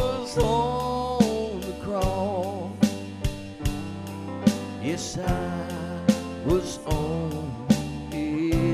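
Live gospel song: a woman singing lead over piano and band, with a steady drum beat.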